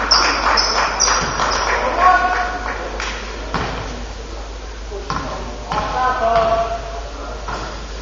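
Basketball shoes squeaking in short high chirps on the hardwood gym floor, then a few thuds of a basketball bouncing, with players and crowd voices calling out in the echoing gym.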